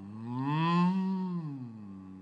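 A man humming one long tone that rises in pitch and then falls back. It is a vocal imitation of the probe tone a client hears in the ear during tympanometry as the air pressure in the canal is swept.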